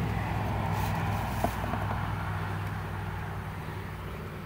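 Steady low hum of honey bees from an open hive, with a few faint ticks about a second and a half in.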